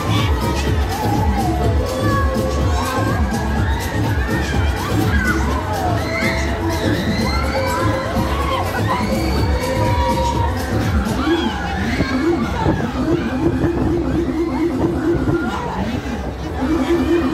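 Riders screaming and yelling on a spinning Techno Power fairground ride, many voices crying out at once, over loud music with a pulsing bass beat; a repeated choppy synth note joins the music about eleven seconds in.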